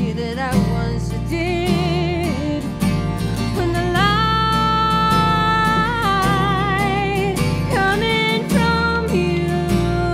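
Acoustic song: plucked acoustic guitar under a woman's sung melody with vibrato, with one long held note near the middle.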